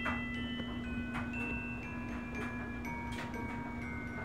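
Wind chimes ringing, with single notes sounding at irregular moments and overlapping as they ring on, over a steady low hum.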